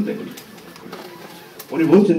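A man speaking in a small room, breaking off briefly for about a second before carrying on.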